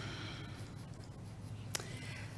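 Quiet pen writing on paper at a desk microphone, with a single sharp click near the end.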